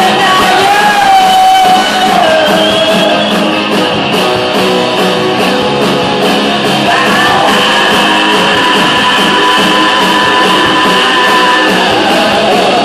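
Live rock band playing loudly, electric guitars over a steady drum beat, with one long held note from about seven seconds in.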